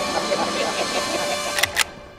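Two sharp metallic clicks close together near the end, as a lever-action rifle is cocked, over a swelling rush of noise and held music tones.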